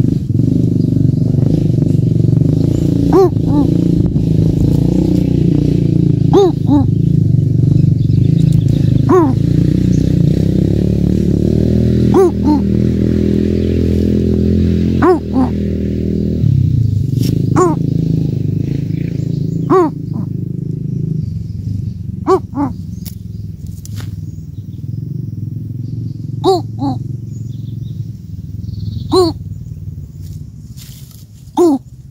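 Coucal calling: short downward-sliding calls repeated every two to three seconds, some given twice in quick succession, over a continuous low rumble that eases after about halfway.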